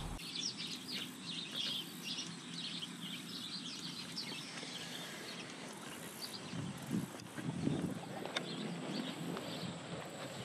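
Outdoor garden ambience: small birds chirp rapidly and repeatedly over a steady background hiss during the first few seconds, then the chirping thins out. A few faint low sounds and a brief louder one come about seven seconds in.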